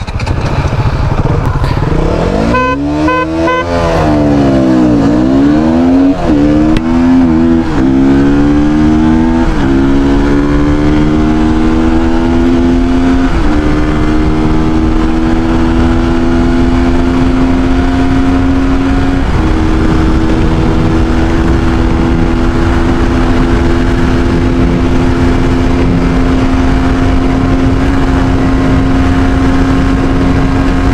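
KTM Duke 200's single-cylinder engine under full-throttle acceleration, revving up and shifting up through the gears, each shift a short dip in pitch. For the last ten seconds it holds a steady high-speed drone near its top speed, with wind rushing over the microphone.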